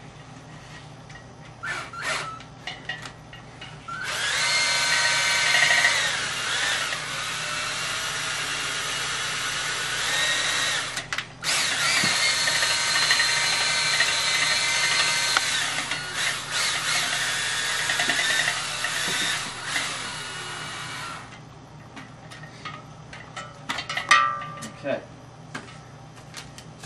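Electric drill spinning a mix-stir rod in a carboy of wine. It runs steadily for about seven seconds, stops briefly, then runs about ten seconds more. The stirring drives leftover fermentation CO2 out of the wine, degassing it.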